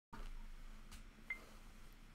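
Low room tone with a faint click, then one short, high electronic beep a little after a second in.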